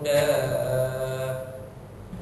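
A man's voice chanting Quranic recitation, holding a long drawn-out melodic note that fades out about a second and a half in.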